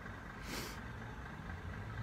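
Faint, steady low rumble of a motor running nearby, with a faint low hum coming in about a second in and a short hiss about half a second in.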